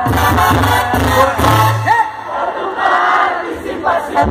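Live Mexican banda music, brass with a tuba bass line, mixed with a crowd cheering and shouting. The tuba line stops about halfway through, leaving the crowd's shouts over the band.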